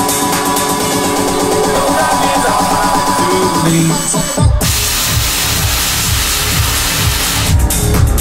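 Electronic dance music from a live DJ mix: held synth chords for the first four seconds or so, then a short dip and the drop hits with heavy pulsing bass and a bright wash of noise.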